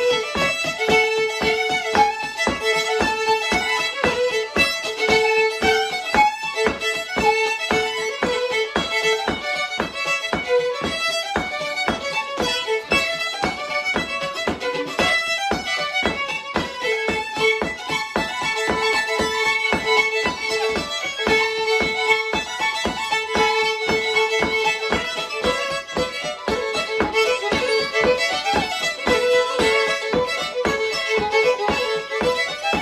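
Two fiddles playing a quick Cape Breton-style tune together, a steady stream of short bowed notes with a repeating figure.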